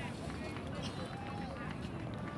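Faint, distant voices talking and calling over steady outdoor background noise, with no clear impact.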